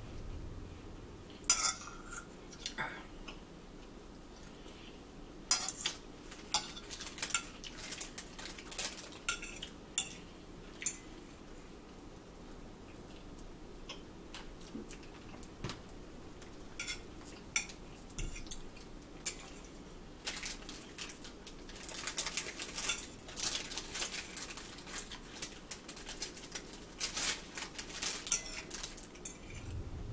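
A metal fork scraping and clinking on a plate in irregular bursts as food is picked up, busier near the end.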